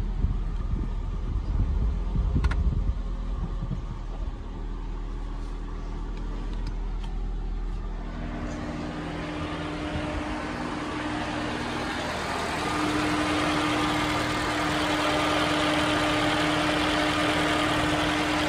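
Ford Fiesta engine idling smoothly just after its first start on a spare battery, heard first from the driver's seat and then from the front of the car. About eight seconds in, a steady rushing noise joins it: the radiator cooling fan running.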